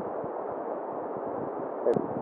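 Steady background noise with no clear source, broken near the end by a single sharp click and a brief vocal sound.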